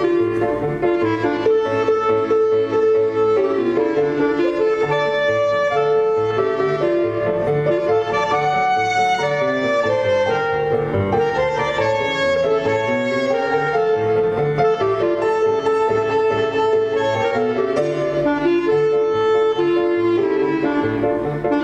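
Clarinet playing a melody over piano accompaniment.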